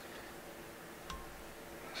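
Quiet room tone with one faint, small click about a second in as the 0.1 mm Sybai pink rib wire, tied in on the fly hook, is shaken until it snaps off.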